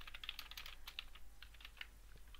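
Computer keyboard typing: a quick, irregular run of faint keystrokes as a short phrase is typed.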